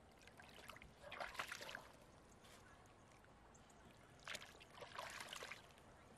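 Shallow ditch water sloshing and splashing as hands grope along the muddy bottom, in two short spells, about a second in and again about four seconds in.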